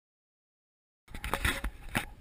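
Dead silence for about the first second, then a sudden run of knocks, bumps and rubbing: hands handling the camera up close.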